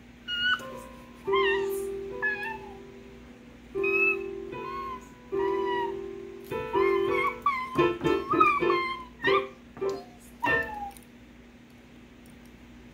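Digital piano notes pressed with a stuffed toy's paws: single notes held about a second each, then a quicker jumble of notes and key knocks in the second half. High sliding, meow-like squeals come in over the notes.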